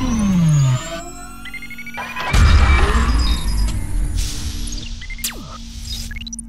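Cinematic electronic intro music and sound effects: a falling pitch sweep that ends about a second in, then a deep boom about two seconds in that slowly fades over a low steady drone, and a quick falling sweep near the end.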